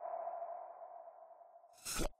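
Intro logo sting: a single electronic ping whose tone rings and fades over about a second and a half, then a brief whoosh near the end.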